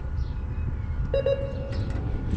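A single electronic beep, a pitched tone about half a second long, sounds about a second in over a steady low rumble.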